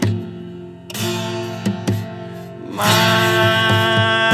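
A nine-string acoustic guitar is strummed in a slow ballad, a few separate chords with short gaps between them. About three seconds in, a voice enters with a long held sung note over the guitar.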